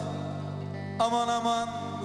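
Live Turkish folk music in a short instrumental gap between sung lines, with bağlama accompaniment. A low tone is held steadily, then a new sustained note with a bright, even tone enters sharply about a second in.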